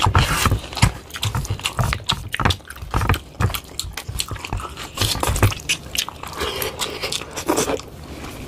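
Close-miked eating by hand: wet chewing and lip smacking with the squelch of fingers mixing rice and fish curry. The sound comes as a steady run of irregular clicks and squishes.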